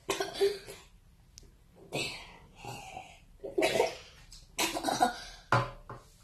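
A child coughing in about six short, separate fits spread over a few seconds.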